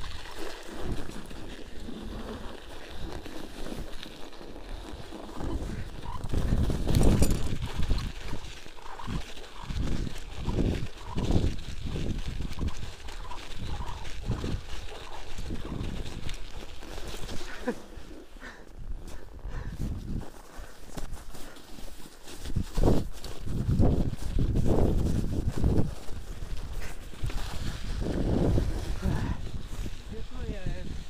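A bicycle ridden over snow, heard from a handlebar-mounted camera: wind rumbling on the microphone and the tyres crunching through snow, with the bike jolting over bumps. The noise comes in irregular louder spells, strongest about seven seconds in and again from about twenty-three seconds.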